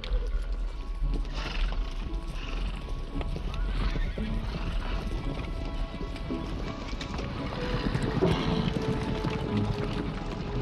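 A herd of horses runs and mills into a wooden corral, hooves pounding over dirt, with several whinnies rising above them. Music plays underneath.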